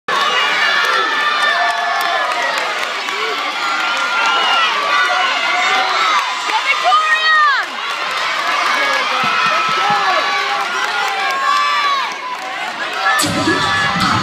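Arena crowd cheering, with many overlapping high-pitched shouts and screams. Music starts about a second before the end.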